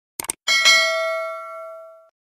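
Two quick click sound effects, then a bright bell ding that rings out and fades over about a second and a half: the click-and-bell chime of a subscribe-button and notification-bell animation.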